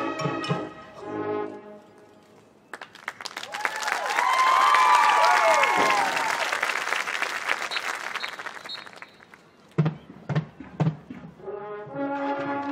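Military marching band brass playing a march, breaking off after about a second and a half. Loud crowd applause and cheering then swells up with rising and falling whoops and fades away. A few separate drum strokes near the end lead the band back in.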